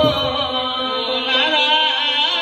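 A singer holds a long, wavering, ornamented chant-like line over a steady drone. There is a low drum stroke right at the start.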